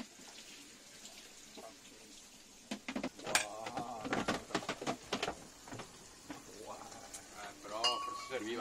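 Clinks of cutlery and a dish as a salad bowl with serving forks is handled, with a person's voice from about three seconds in and again near the end.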